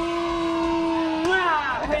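A voice holding one long, steady note for about a second and a half, then breaking into a short spoken call near the end.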